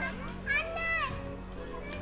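Children's voices at play on swings, with one high, wavering call from a child about half a second in, over quiet background music.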